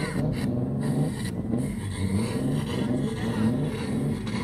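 Toyota 2JZ straight-six in a modified Datsun Z drag car running, its revs rising and falling gently every second or so.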